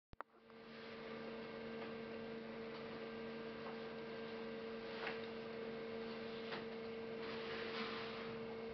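Steady electrical hum, two constant tones over a faint even hiss, with two short clicks at the very start and a few faint ticks.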